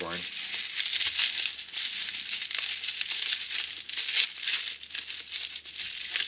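Bubble wrap and packing paper crinkling and rustling as hands lift a wrapped vacuum tube out of a shipping box: a continuous run of irregular crackles.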